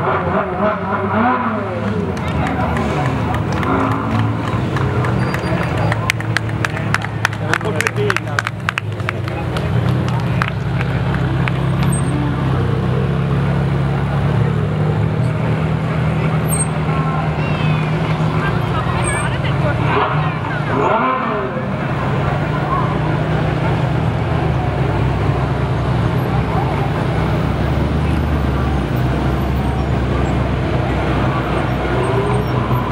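Ferrari sports-car engines running at low speed as the cars crawl past one after another, a steady low rumble, with an engine revving briefly about twenty seconds in. Crowd chatter runs underneath.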